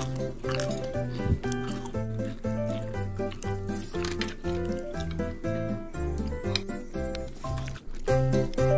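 Bouncy background music with a steady bass line, over short crisp crunches as a pan-fried shredded-potato and cheese pancake is cut and broken apart.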